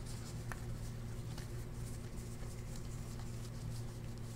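Football trading cards flipped and slid through by hand in a stack: faint papery rustling and soft ticks, over a steady low hum.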